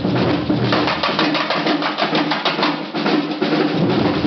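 Percussion band playing a fast, dense drum groove. The large bass drums drop out about a second in, leaving the higher, snare-type drums playing, and come back in near the end.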